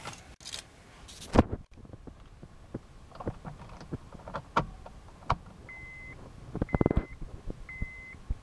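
A car key jangling and clicking as it is handled, inserted and turned in the ignition of a 2011 Honda Accord, with a burst of rattling clicks near the end. Then the car's warning chime starts beeping about once a second, a sign that the ignition is switched on without the engine running.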